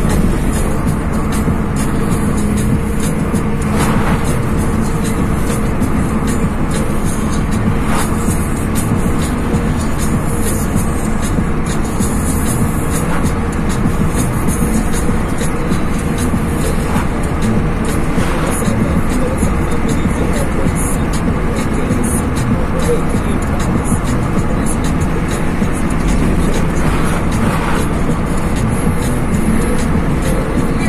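Steady road and engine noise inside a moving car's cabin, with music and singing from the car's dashboard screen underneath.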